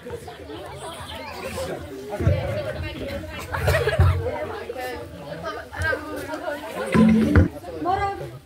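Indistinct chatter of many overlapping voices, with a few low thumps about two, four and seven seconds in.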